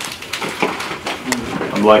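Low talk with two light, sharp clicks in the first half, then a man's voice near the end.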